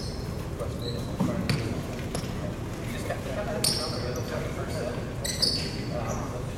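Sneakers squeaking briefly on a hardwood gym floor about four and five and a half seconds in, with a few sharp thuds of a volleyball hitting the floor, over voices chattering in an echoing gym.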